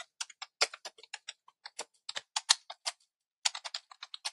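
Typing on a computer keyboard: a quick, irregular run of key clicks with a brief pause a little after three seconds in.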